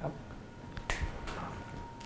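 A metal bottle cap being snapped: one sharp click about a second in, with a couple of fainter clicks around it.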